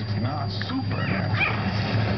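Lhasa Apso puppies whimpering and yipping, with a couple of short high cries about a second in, over a steady low hum.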